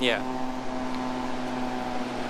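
A steady motor-like hum at one unchanging pitch, over a constant background hiss.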